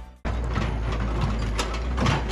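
The tail of an intro music sting cuts off at the start, then a steady outdoor background noise with a strong low rumble, with no distinct events in it.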